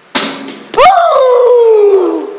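A young voice letting out a loud, long wordless yell that jumps up in pitch and then slides slowly down, just after a short burst of noise.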